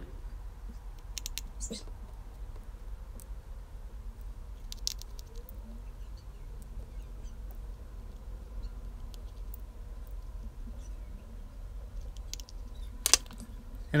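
Sparse small ticks and clicks of a precision screwdriver and tiny screws being worked into an iPhone X's internal connector bracket, over a steady low hum, with one louder sharp click near the end.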